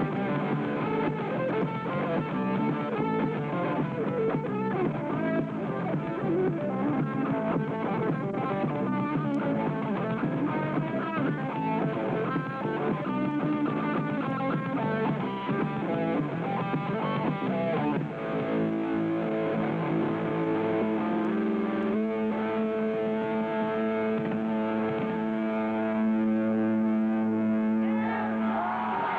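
Hardcore punk band playing live, distorted electric guitar to the fore, on a lo-fi recording with little bass. About two-thirds of the way in, the fast riffing gives way to a held chord left ringing.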